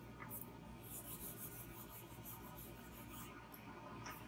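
Faint rubbing of an eraser wiping marker ink off a whiteboard, in a few short, scratchy strokes.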